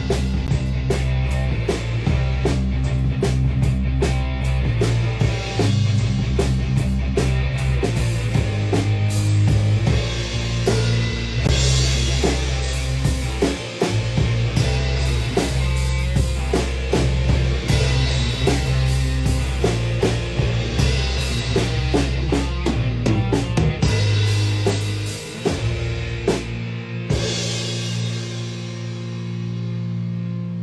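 A rock band playing an instrumental passage live on drum kit, electric bass and electric guitar, with the drums and bass loudest. Near the end the deep bass drops out and the playing thins.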